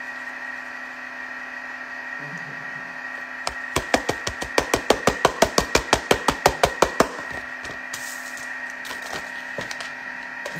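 A packet being shaken out over a metal springform cake pan: a quick, even run of crackly knocks, about seven a second, starting a few seconds in and stopping after roughly three and a half seconds.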